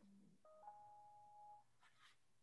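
A faint two-note electronic notification chime, the second note held for about a second, over near silence.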